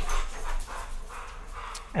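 A pet dog barking faintly, set off by a greyhound it despises that has just walked past.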